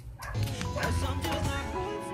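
A male singer's live pop vocal over sustained held chords, coming in a moment after the start.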